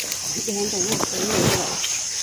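A woman talking briefly, over a steady high-pitched buzz of insects.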